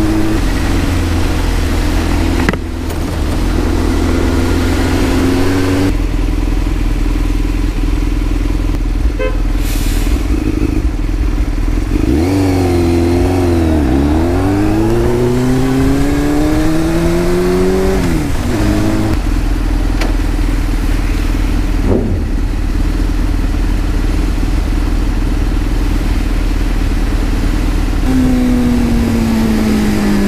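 Sportbike engine running at a steady cruise over wind and wet-road noise. About twelve seconds in the revs drop, then climb again over several seconds as the bike pulls away. Near the end they fall again.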